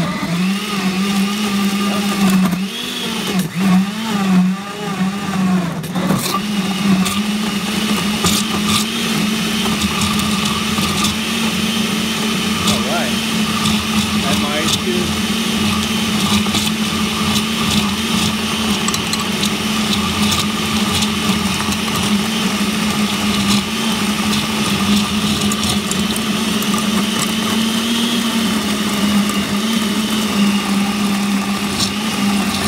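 Vintage Vitamix 3600/4000 stainless-steel blender running on high speed, liquefying a thick smoothie. Its motor note wavers and dips for about the first six seconds as the mixture is drawn into the blades, then holds steady.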